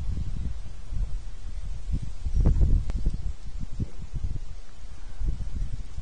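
Wind buffeting the microphone outdoors: an uneven low rumble with rustling, strongest about two and a half seconds in.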